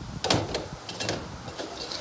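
Aluminium squeegee channels knocking and clattering as they are picked up and handled: one sharp knock about a third of a second in, then a few lighter clicks.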